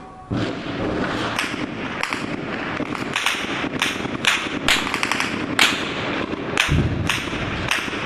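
Gunfire: about a dozen sharp single shots at an uneven pace, roughly two a second, with a low rumble underneath near the end.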